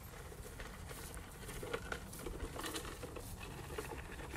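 Faint rustling with many small, irregular light taps and crackles.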